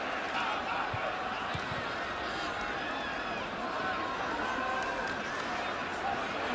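Football stadium crowd noise: a steady din of many voices, with scattered voices heard faintly above it.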